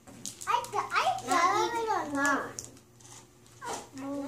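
A young child's high voice babbling or vocalizing in drawn-out, wavering sounds, from just after the start to about halfway through, with no clear words.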